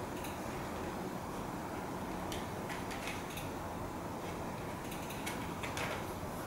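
Faint light clicks and scrapes of metal painting knives being handled and worked against a paper-plate palette while mixing acrylic paint, over a steady background hiss; a few clicks come near the middle and a small cluster near the end.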